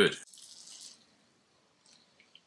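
A spoken word ends, followed by a brief soft hiss lasting under a second, then near silence.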